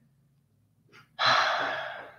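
A man's audible breath out through the mouth, like a sigh. It comes in suddenly after about a second of near silence and fades over about a second.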